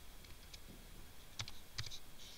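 Faint keystrokes on a computer keyboard: a soft tap about half a second in, then a few sharper keystrokes near the end.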